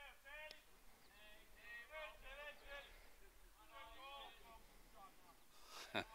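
Near silence with faint, distant voices talking on and off. A single sharp knock right at the end.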